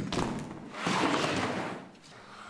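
A sharp thud as a large anatomy chart is pulled down over a blackboard, followed about a second later by a second-long swell of noise.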